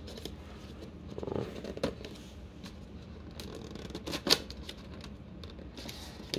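Cardboard box being handled and its pull-tab flaps worked open: soft scrapes and rustling with scattered sharp clicks, the sharpest about four seconds in.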